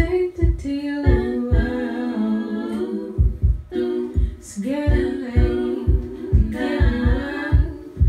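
Female a cappella vocals singing wordless lines, several voice parts at once, over a steady low thumping beat of about two to three beats a second. The sustained voices break off briefly about three seconds in and come back a second or so later.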